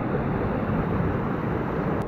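Steady rushing noise of a river flowing over rocks.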